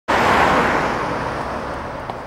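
A car passing on a street, its road noise fading steadily as it moves away.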